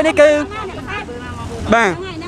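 A man talking in Khmer, with a steady low rumble of roadside traffic underneath.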